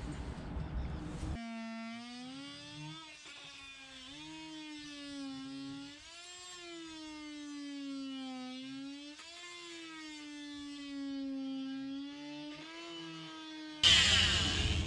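Cordless oscillating multi-tool running, its blade cutting out old sealant around a sailboat's cockpit locker frame. It starts about a second in and stops just before the end, a steady whine whose pitch sags and recovers several times as the blade bites and eases.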